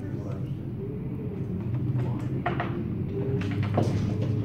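Indistinct, murmured talking over a steady low hum, with a few short bursts of voice near the middle and end.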